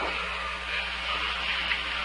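Steady hiss with a low hum underneath, with no distinct event: background noise of the recording line during a pause between voices.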